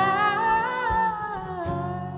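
A woman's voice singing one long wordless held note that wavers slightly and drops in pitch about one and a half seconds in, with an acoustic guitar ringing softly beneath.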